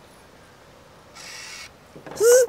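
Sticklabs NFC smart lock's motor whirring briefly about a second in, for about half a second, as it unlocks after a user sticker is tapped on it.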